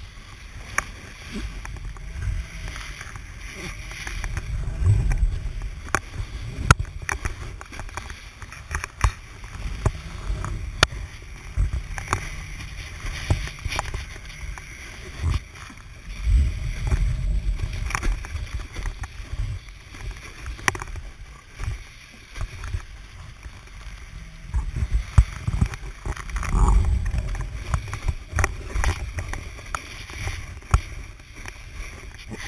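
Kiteboard ride over choppy sea, heard from a camera on the kite's control bar: uneven wind buffeting with rushing water and spray that swells and eases in surges, and scattered sharp knocks.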